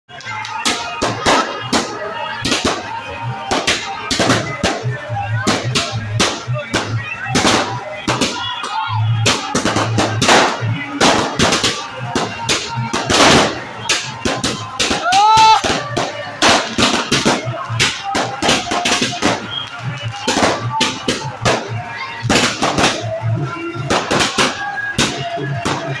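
A string of firecrackers going off in rapid, irregular bangs, with music and voices behind.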